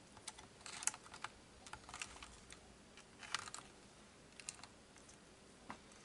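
Faint, scattered light clicks and taps on a clear acrylic plate on a digital scale, made by a bearded dragon's claws and the hands holding it in place. The clicks are irregular, with the sharpest about a second in and again a little past three seconds.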